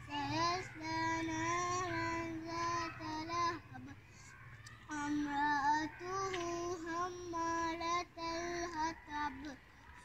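A child's voice singing a slow melody in long held, gently wavering notes, breaking off briefly about four seconds in and again near the end.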